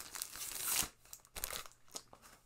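Rustling and crinkling handling noise, loudest about half a second in, with a few light clicks or knocks.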